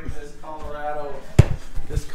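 A voice over background music, with one sharp knock about one and a half seconds in.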